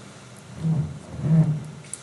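A man's voice murmuring twice, low and brief, with a light click near the end.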